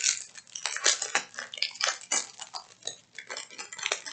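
Small plastic zip-top bags of diamond painting drills being handled: crinkling plastic and many irregular small clicks of the loose drills knocking together inside.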